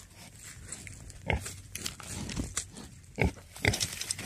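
Wild pig giving a handful of short grunts, spaced out about a second apart.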